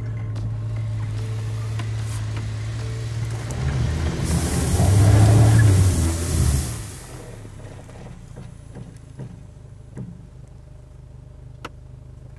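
Range Rover Evoque Convertible's turbocharged four-cylinder petrol engine running steadily, then pulling harder about four seconds in as its wheels spin through soft sand and throw up a rushing spray of sand. The burst dies away about seven seconds in, leaving a quieter engine hum.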